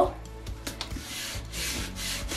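Fingers rubbing blue painter's tape smooth onto a painted wooden board: a soft rubbing that starts about a second in, after a couple of light clicks.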